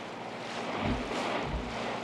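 Water rushing and splashing along the hull of a two-masted sailing boat under way through choppy sea, with wind, and a couple of soft low thuds as the bow meets the waves.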